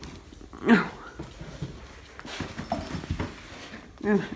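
A cat's single short meow, falling in pitch, about a second in, followed by faint rustling and soft handling noises.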